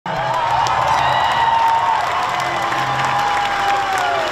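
A gym crowd of students cheering and clapping over loud music with a steady bass, and a long high note held through it that sinks slightly near the end.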